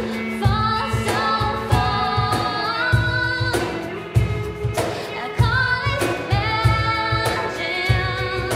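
Live band music: a woman singing over acoustic and electric guitar, with a steady beat of low knocks and light percussion.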